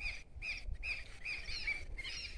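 Short chirping animal calls repeating a few times a second, over a low background rumble.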